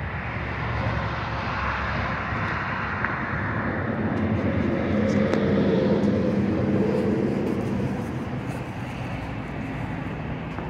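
Outdoor vehicle engine noise: a steady rush with a low engine hum that swells to its loudest in the middle and then eases off, like a vehicle passing.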